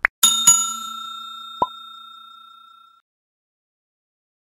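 Subscribe-button animation sound effects: a quick double mouse click, then a bright bell ding that rings and fades away over about two and a half seconds, with a short blip partway through.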